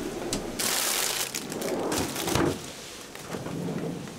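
Refrigerator drawers being slid open and their contents handled, with a rustle of plastic bags and a sliding rumble, loudest about two seconds in.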